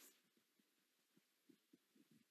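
Near silence on a video-call recording, with faint hiss and a few faint soft low thumps.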